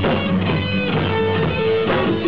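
Live rock band playing loudly, with electric guitars and a drum kit, in an instrumental passage.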